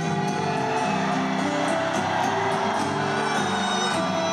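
Live band playing the instrumental introduction of a song, picked up from far back in a large arena, with the audience cheering underneath.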